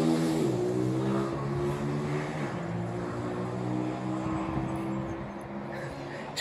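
A vehicle engine humming steadily and slowly fading away as it passes.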